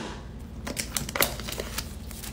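Plastic packaging being picked open with a fingernail: an irregular run of small clicks and crinkles.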